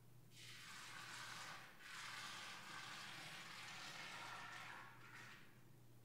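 Faint hiss in two stretches, about five seconds in all, with a brief break between them, over a steady low electrical hum.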